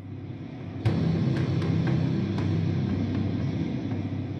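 Low, tense background music: a steady held drone that swells about a second in, with sparse light ticks over it.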